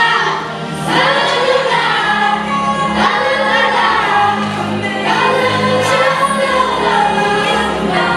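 A group of young voices singing together, with instrumental accompaniment, in a stage musical number.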